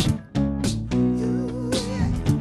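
Live-looped acoustic guitar groove: layered guitar parts over a looped beat of sharp percussive hits.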